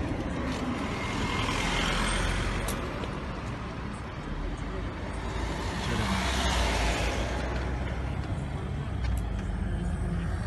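Road noise heard from inside a moving car: a steady low rumble of engine and tyres with a hiss of wind and traffic, swelling twice, about two seconds in and again around six to seven seconds.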